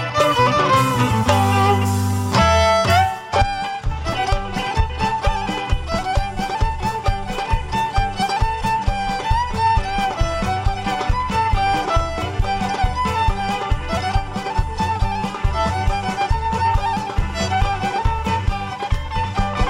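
Live band music: a held chord for about the first three seconds, then a steady up-tempo beat with a mandolin picking the melody over guitars, bass and drums.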